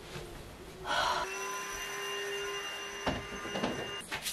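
A brief hiss about a second in, then a steady ringing tone made of several pitches held for about three seconds and cut off at the end. A single soft knock comes just after three seconds.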